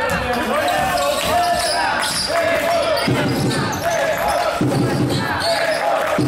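A basketball being dribbled on a wooden gym floor, with knocks of the ball, while spectators' voices shout and chant steadily in a large hall.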